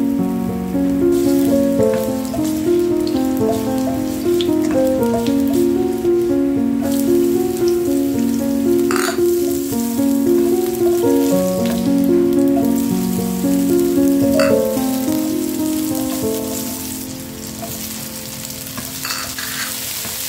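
Ginger, garlic and onion sizzling as they sauté in hot oil in a nonstick wok, stirred with a spatula, with a couple of sharp knocks of the spatula on the pan. Instrumental background music with held, stepping notes plays over it and is louder than the sizzle.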